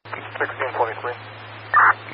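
Police radio transmission through a scanner: a brief stretch of thin, radio-band speech keys up over a steady low hum, with a short loud burst near the end.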